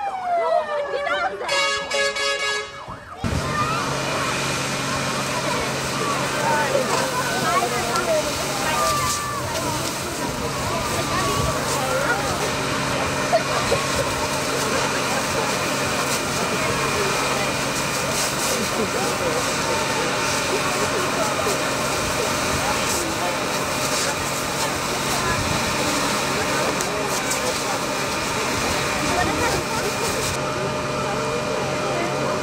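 A siren winding down in pitch, then a held siren tone that cuts off about three seconds in. After that, a steady rush of water from fire hoses over the low hum of a fire engine's pump, as a burning car is doused.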